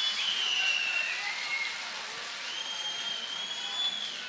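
Audience applauding, with two long high whistles over the clapping.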